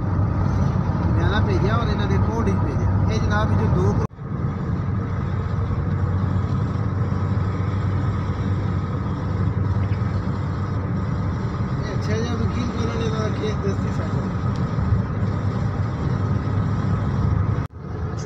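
Car cabin noise while driving: a steady low rumble of road and engine, with faint voices at moments. It breaks off briefly about four seconds in and again near the end.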